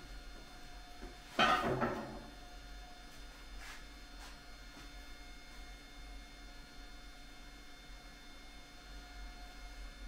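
Lengths of metal stock being handled: a short clatter about a second and a half in, then a couple of faint taps around four seconds, over quiet room tone.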